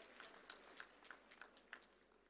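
Faint hand claps, about three a second, dying away.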